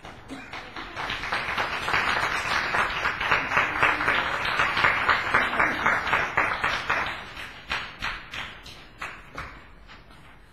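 Small audience applauding, building up over the first two seconds and thinning out to a few scattered claps near the end.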